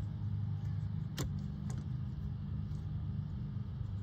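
2024 Jeep Wrangler JL's engine idling steadily, heard inside the cab. A sharp click about a second in, and a lighter one half a second later, as the radio mount's socket is fitted over the dash ball.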